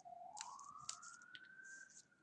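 Near silence: a faint single tone that slowly rises in pitch, with a few faint clicks.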